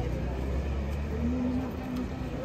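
Low, steady engine rumble of a car on the street, with people talking over it.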